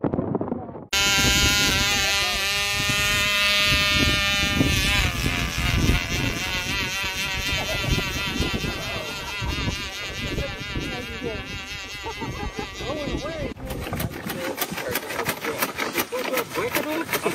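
Radio-controlled model airplane's motor and propeller whining: a steady whine made of many tones through the first few seconds, then wavering up and down in pitch. Near the end the sound changes abruptly to a rough, rapid clicking.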